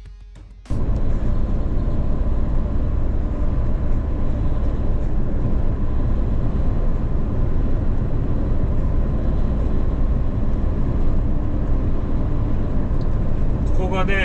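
Heavy truck driving at highway speed, heard from inside the cab: a steady, loud drone of engine and road noise that cuts in abruptly under a second in.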